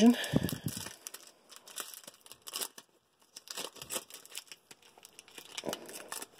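Pokémon card pack being torn open by hand, its paper and foil wrapper ripping and crinkling in scattered short crackles, with a low thud of handling about half a second in.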